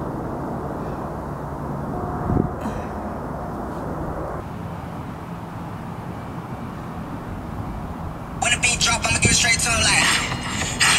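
A steady low outdoor rumble, like a distant engine or aircraft. About eight and a half seconds in, a song starts, loud and with a strong beat.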